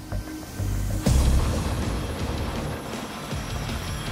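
Background music with a pulsing beat; about a second in, a loud crash gives way to dense, steady noise of an electric jackhammer breaking up a concrete floor.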